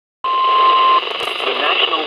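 Weather radio loudspeaker: the end of the steady single-pitch warning alarm tone (1050 Hz), which cuts off about a second in. Then the broadcast voice starts reading a severe thunderstorm warning over radio hiss.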